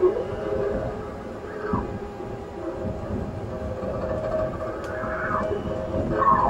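Experimental improvised music: a sustained, layered drone of held tones with sliding, falling pitch glides, about two seconds apart, and a sharp attack at the very start.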